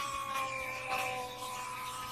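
Sound from an anime episode's soundtrack played back: a held, siren-like tone made of a few steady pitches that sink slowly and slightly.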